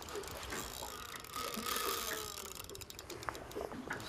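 Small Shimano spinning reel clicking rapidly under load from a hooked snapper. A faint thin whine comes in from about one to two seconds in.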